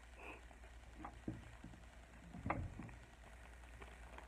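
Faint handling noises as a clear plastic zip bag and paper are moved about: a few light clicks and knocks, the loudest about two and a half seconds in.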